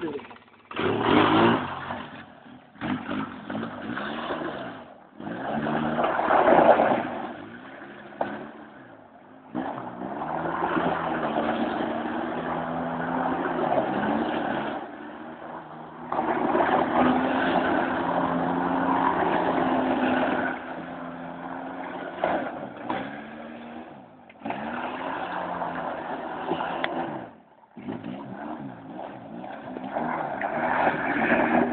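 A motor vehicle's engine running at a steady note in stretches, with people's voices over it.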